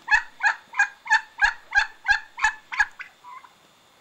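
Poultry calling in an evenly spaced series of short, loud calls, about three a second, that stops about three seconds in.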